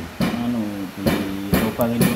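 A few sharp taps of a claw hammer on a brass hinge set into a wooden window frame, in the second half, as the hinge is tapped into place before its screws go in.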